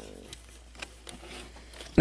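A few faint clicks of plastic LEGO hinge flaps and bricks as the sides of a LEGO speeder model are opened by hand.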